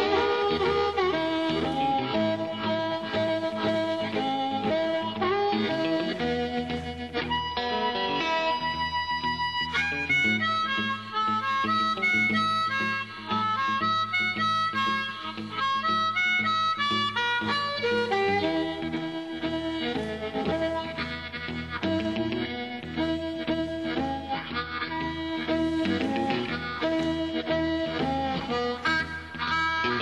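Blues band playing live, with an amplified blues harmonica taking the lead in long held and bent notes over electric guitar, piano, bass and drums.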